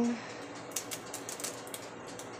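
A few faint, light clicks and taps from hands handling an egg over a glass mixing bowl before cracking it.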